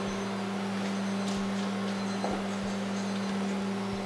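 Steady hum of dairy-plant machinery, one low tone with a fainter higher one, with a few faint taps and footsteps.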